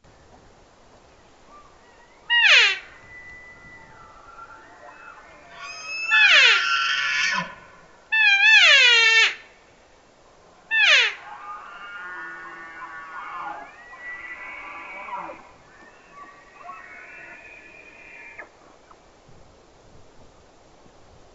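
Bull elk bugling: several high, whistling calls that slide steeply down in pitch, some holding a high note first. Fainter bugles follow in the second half.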